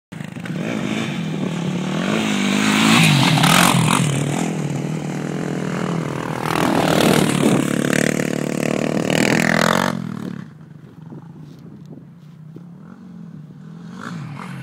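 Sport quad (ATV) engines revving hard, pitch rising and falling as the quads accelerate and pass close. About ten seconds in the sound drops suddenly to a faint, distant engine.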